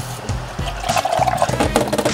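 Water running from a kitchen tap into a drinking glass as it is rinsed, heard under background music.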